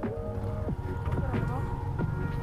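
A low motorcycle engine rumble with wind, the bike moving slowly, under background music with a voice.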